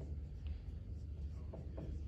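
Felt-tip marker writing on a whiteboard: a few faint, short strokes over a steady low room hum.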